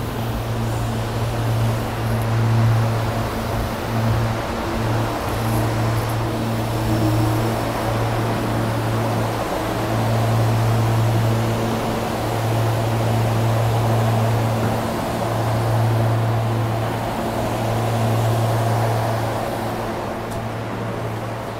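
SEPTA Regional Rail electric train pulling into the platform and standing there: a steady low electrical hum with faint overtones over an even rushing noise.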